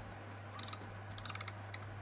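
Correction tape dispenser's gears ratcheting in two short runs of rapid clicks, about half a second in and again around a second and a half, as the tape is run over the page without laying down.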